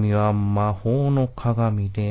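A man's low voice intoning three or four long, drawn-out syllables in a flat, chant-like way.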